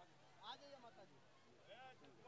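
Very faint, distant speech: a few brief voiced phrases heard at low level while the stage microphone is switched off.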